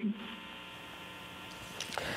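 Steady electrical hum and hiss from an open telephone line, with several faint steady tones in it. A faint tick comes near the end.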